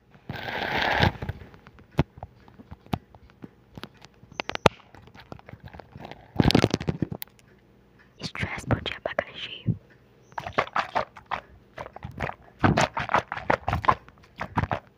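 Close-miked ASMR sounds: clusters of quick, crisp clicks and crackles, with soft whispering between them.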